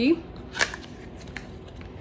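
Paper and thin cardboard rustling, with a few small clicks, as a small product box is handled and a folded paper card is pulled out of it. The sharpest click comes a little after half a second in.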